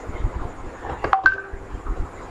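A brief electronic beep about a second in: short steady tones that step up in pitch and last about half a second, over faint room noise.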